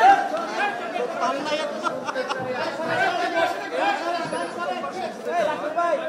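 Several voices talking at once in a crowd: overlapping chatter with no single clear speaker.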